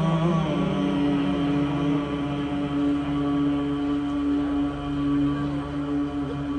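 A man's voice singing one long held note in a Saraiki Sufi kalaam recitation. It glides up into the note about half a second in and then holds the pitch steady.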